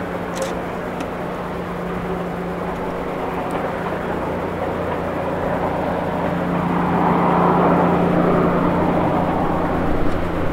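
A machine hum, most likely an engine, runs steadily with a rushing noise and grows louder in the second half.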